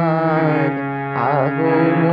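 Harmonium holding steady chords under a man's voice singing a drawn-out, wavering note of a Bengali devotional song to the goddess Durga, with a quick trill about a second in.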